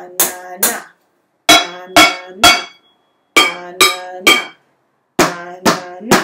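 Wooden spoons striking upturned kitchen pots and pans in groups of three strokes, the 'ba-na-na' rhythm, about one group every two seconds. Each group lands on a different pot, and the metal rings briefly after each hit.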